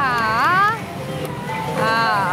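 A Bakemonogatari pachislot machine's speaker plays a character's drawn-out voice with a wavering pitch over the machine's music. The voice breaks off under a second in and starts again near the end, over the steady din of the slot hall.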